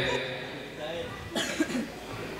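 A man coughs briefly into a microphone about a second and a half in, after some faint low speech.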